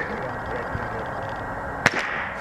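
A single sharp gunshot, distant and not much louder than the background, near the end, over a steady outdoor hiss.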